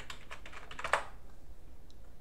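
Computer keyboard typing: a quick run of keystrokes while a web address is entered, ending in one harder keypress about a second in that sends the address, the Enter key. After that only a faint low hum remains.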